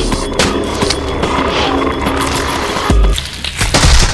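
Film soundtrack: music mixed with dense sound effects and sharp hits. The mix dips briefly about three seconds in, then a loud, deep hit lands near the end.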